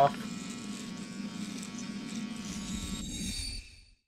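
A steady low buzzing hum that fades away about three and a half seconds in, ending in dead silence.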